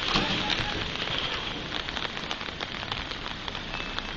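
Steady rain: an even hiss with many close drops ticking sharply.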